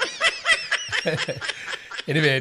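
A person laughing in a quick run of short snickers.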